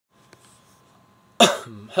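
A man coughs once, sharply, about a second and a half in, after faint room tone.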